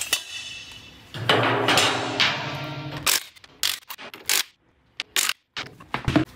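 A metal hubcap being pried off a wheel with a screwdriver: a click, then about a second in it comes free with a metallic clang that rings on for a couple of seconds. This is followed by scattered sharp metal clicks and knocks.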